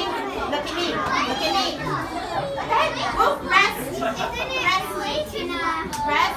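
A group of young children chattering at once, many high voices overlapping in a room.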